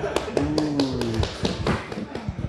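A string of sharp taps and knocks from people moving about, with a voice briefly held on one low, slightly falling note in the first half.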